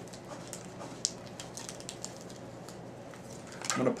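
Faint rustling and small ticks from fingers handling a packet of synthetic dubbing and pulling out a pinch, with one sharper click about a second in, over steady room hiss.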